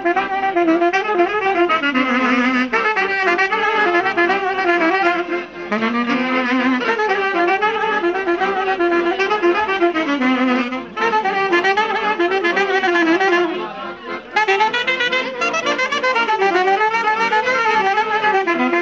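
Music: a Romanian folk melody led by a reed wind instrument, played with quick ornaments and wavering pitch, with brief pauses between phrases.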